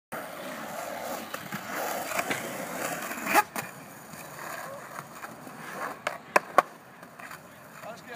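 Skateboard wheels rolling on concrete, with one loud clack of the board a little over three seconds in. A quick run of three more clacks of the board hitting the concrete comes about six seconds in.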